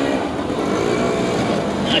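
Steady mechanical hum with a thin high whine running under it, and faint talk in the background.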